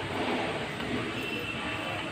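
Small trommel screen running, its perforated drum turning on a steel frame, giving a steady mechanical running noise with a faint high whine in the second half.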